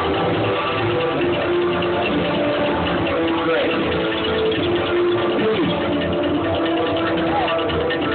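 Music played over a stadium's public-address loudspeakers, with a crowd chattering.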